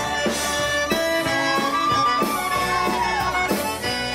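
Live Cajun band music led by a button accordion, played at a steady dance beat.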